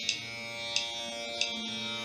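Tanpura drone under a tabla accompaniment keeping a steady beat, with a crisp stroke about every two-thirds of a second.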